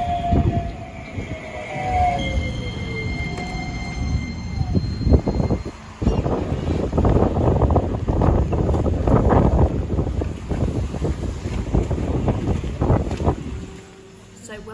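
Electric tram pulling into the stop: a motor whine falls in pitch as it brakes, with high wheel squeal over it. From about six seconds in comes a loud, uneven rumbling with many knocks.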